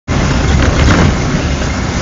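Steady rumbling and rushing noise of a Rotovelo velomobile riding along, heard from inside its shell: tyre, drivetrain and wind noise.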